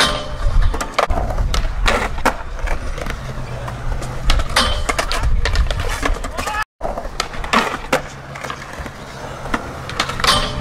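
Skateboard on concrete: wheels rolling, with repeated sharp clacks and pops of the board and a grind along a metal handrail. The sound cuts out completely for a split second about two thirds of the way through.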